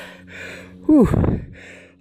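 A man out of breath after an uphill hike, breathing heavily in short hissy breaths. About a second in he lets out a falling "whew".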